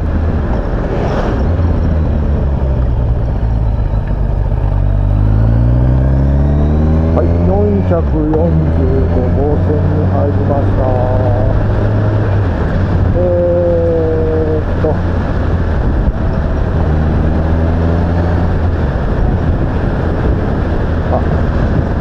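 Motorcycle engine running on the road under a rush of wind noise. Its pitch climbs as it accelerates a few seconds in, then holds steady at cruising speed.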